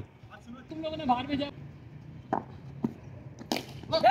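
Faint voices of players calling out across the field, with a couple of light clicks and a sharper crack about three and a half seconds in.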